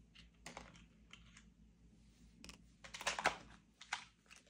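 Light clicks and paper rustles as a paper clip is slid onto a sticky note and a stack of banknotes. The sounds are faint and scattered, with the loudest cluster about three seconds in.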